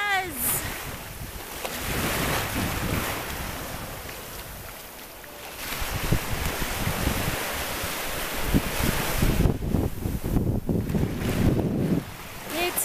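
Small waves washing onto a sandy beach, with wind buffeting the microphone, heavier in the second half.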